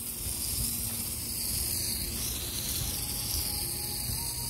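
Garden hose spray nozzle hissing steadily as water sprays onto ground cover; the hiss shifts in tone about halfway through.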